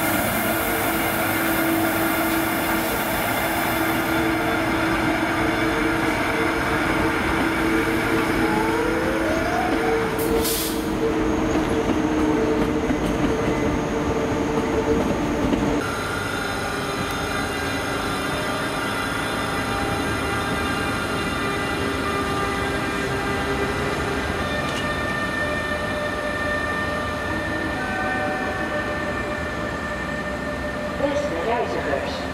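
NS Class 186 (Bombardier TRAXX) electric locomotive on the move, its traction equipment giving off several steady whining tones; one tone rises in pitch as it gathers speed. There is a single sharp click about ten seconds in.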